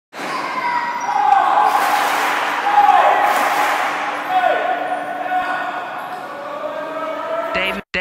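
Basketballs bouncing on a hardwood gym floor, with many kids' voices echoing through the hall.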